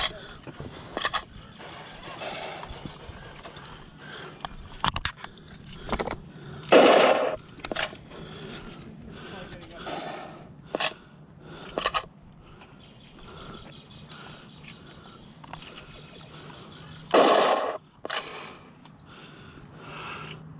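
Laser tag blasters firing during a game: scattered sharp clicks, with two louder half-second shot bursts about seven and seventeen seconds in. Faint distant voices can be heard in between.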